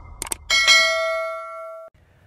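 Subscribe-button sound effect: a quick double mouse click, then a bright notification-bell ding, struck twice in quick succession, that rings out for over a second and cuts off suddenly.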